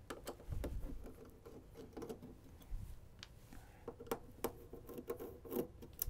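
Light clicks, taps and rubbing of hands working the screws and sheet-metal cover of a DiscoVision PR-7820 laserdisc player, with sharp little clicks scattered through.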